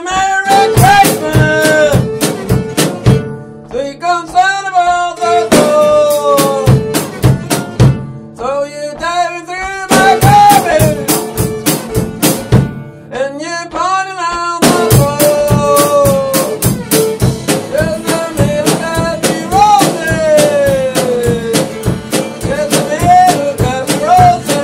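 A violin played live, its melody sliding and wavering in pitch, over a drum kit struck in rapid, busy patterns with cymbals. The cymbals drop out a few times before coming back in.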